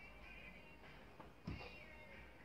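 Faint music leaking from headphones, barely above room tone, with one soft knock about one and a half seconds in.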